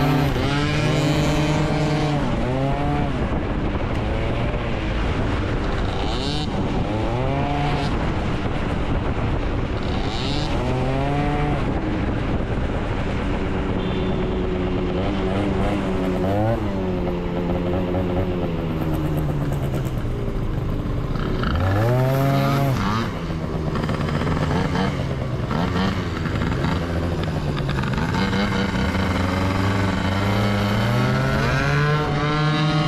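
Scooter engine running under way, its pitch repeatedly rising and falling as the throttle is opened and closed, with wind rushing over the microphone.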